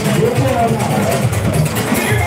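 Loud amplified party music with a voice carrying over a steady low bass line, amid the noise of a packed crowd.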